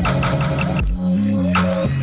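Lo-fi hip-hop beat played live on a Roland SP-404SX sampler: a steady, deep bass line with a drum hit at the start and another about one and a half seconds in, and a quick run of short high blips in the first second.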